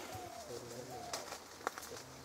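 A dove cooing in two gliding phrases, with two sharp clicks in the second half.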